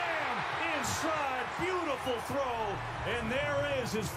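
Televised NFL game audio: a man talking over steady background noise from the broadcast.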